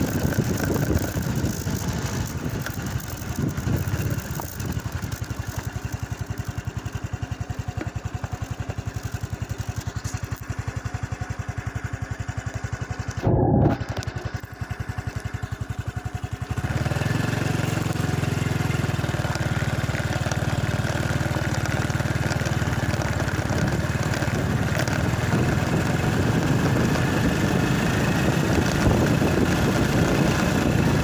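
Small motorcycle engine running while riding on a dirt track, with a brief loud thump just past halfway. After that the engine runs louder and heavier for the rest of the ride.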